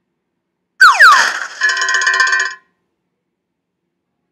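Cartoon sound effects from an animated title sting: a quick falling whistle-like glide, then a bright, shimmering chime chord that rings for about a second and stops.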